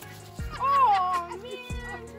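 A person's wordless cry that rises and then falls in pitch, about half a second in, over steady background music.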